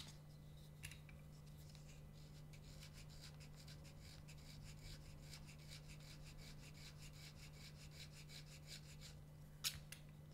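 Reed knife scraping cane for a tenor krummhorn double reed: faint, quick scratchy strokes, a few a second, thinning the cane to profile it.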